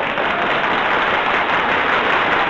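Steady applause from a crowd.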